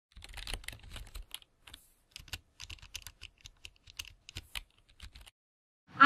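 Typing on a computer keyboard: quick, irregular key clicks that stop suddenly about five seconds in.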